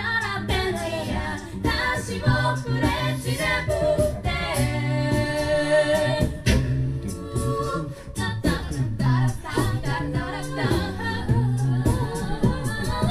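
A cappella vocal group of women and men singing in close harmony over a low sung bass line, with beatboxed vocal percussion keeping a steady beat.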